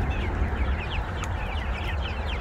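A flock of young chickens feeding on corn, many overlapping short falling chirps and clucks.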